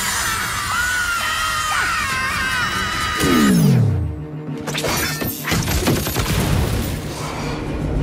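Cartoon sound effects over music: wavering screams for the first three seconds or so, then a falling tone as the death-circle machine winds down. After that come crashing and shattering effects.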